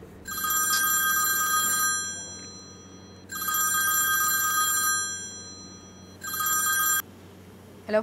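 Mobile phone ringing with a steady electronic ringtone, three rings, the third cut off short about seven seconds in as the call is answered.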